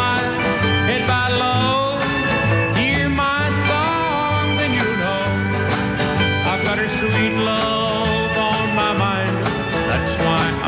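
A male country singer singing a country song with a live country band: guitars and a regular bass line.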